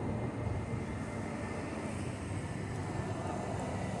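Steady low rumble of outdoor city background noise, even throughout with no distinct events.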